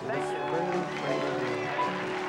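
A song with voices singing over steady instrumental backing.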